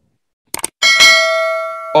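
Subscribe-button animation sound effect: a quick double click, then a bright bell chime that rings on for about a second and slowly fades.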